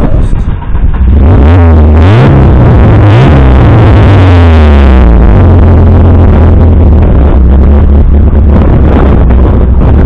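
David Brown Automotive Mini Remastered's performance-tuned Rover four-cylinder engine running through its loud exhaust, recorded close behind the car. It is revved up and down a few times in the first few seconds, then runs steadily.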